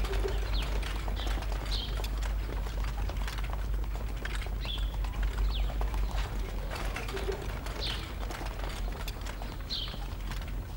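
Short bird chirps every second or two over the quick, overlapping footsteps of a group walking on stone paving.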